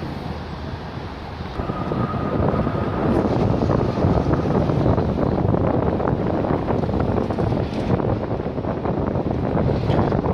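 Strong wind buffeting the microphone, getting louder about two seconds in, over a B2-class Melbourne tram pulling away along the street track; a faint steady whine sounds briefly near the start.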